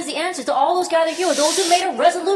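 A man speaking into a handheld microphone, with a drawn-out hissing sound in the second half.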